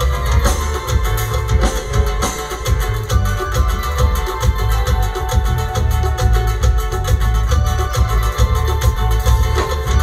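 Live band playing a Purépecha pirekua for dancing, with a steady beat and heavy bass.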